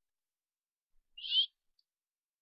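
Near silence, broken a little past halfway by one short, high chirp that rises in pitch.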